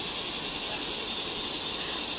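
A steady, high-pitched hiss of background noise, even throughout, with no distinct events.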